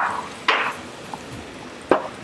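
Carrot latkes frying in shallow oil in a skillet, a steady low sizzle, broken by a few short clatters of kitchen utensils.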